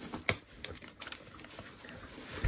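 Light clicks and soft rustling as a paper dust bag is worked out of the plastic collar and cloth outer bag of an Electrolux 402 vacuum cleaner, the sharpest click about a quarter second in.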